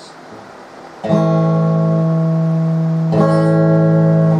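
Electric guitar played through a homemade valve (tube) amplifier at about half volume: a strummed chord about a second in rings on, and a second strummed chord near three seconds rings on to the end.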